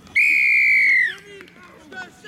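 Referee's whistle blown once: a loud single blast of about a second that drops slightly in pitch as it ends.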